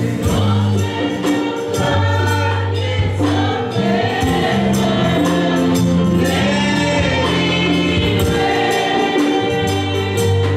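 Live gospel worship song: a man leads the singing and a group of backing singers joins him. A band with drums and cymbals plays under them, over steady low bass notes.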